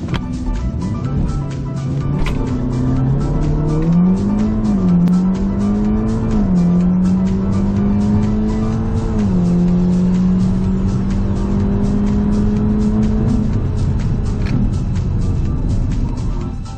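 Audi S3 engine at full throttle on a drag launch, heard from inside the cabin: the note climbs, then drops sharply with upshifts about four and a half, six and a half and nine seconds in, and holds steady before fading out a couple of seconds before the end. Background music with a steady beat plays over it.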